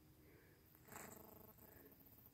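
Near silence: faint outdoor background, with one faint, brief sound about a second in.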